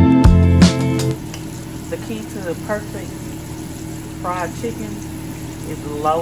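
Background music cuts off about a second in, giving way to a steady sizzle of flour-dredged chicken tenders frying in a pan of oil, with faint voices in the background.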